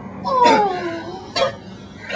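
A whining cry, plausibly the man's own, falling in pitch over about half a second, then a short sharp burst of noise about one and a half seconds in.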